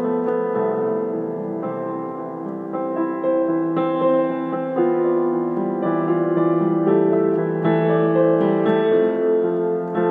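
Solo piano improvisation: held chords and melody notes, the harmony shifting every second or so.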